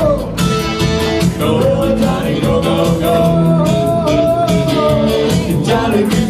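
Live rock and roll band playing: a sung vocal line over electric guitar and a steady drum beat.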